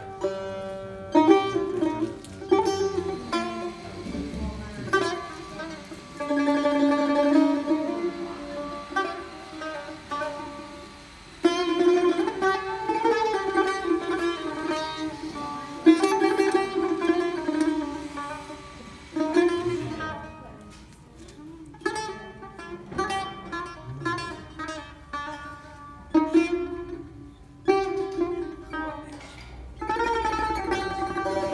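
Solo Persian tar played with a plectrum: plucked melodic phrases, some sustained by rapid repeated strokes, broken by short pauses in the second half.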